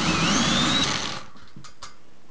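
Cordless drill-driver running a short bolt into a steel stretcher rail, its motor whine rising in pitch for about a second before it stops. Two faint clicks follow near the end.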